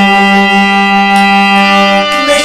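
Harmonium holding one steady note, a reedy tone with many overtones that neither wavers nor changes pitch.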